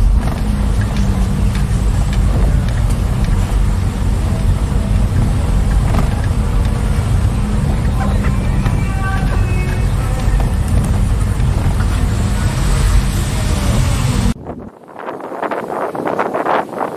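Steady low engine and road rumble of a car driving slowly along a town street. It cuts off abruptly about fourteen seconds in, giving way to quieter, wind-blown street noise.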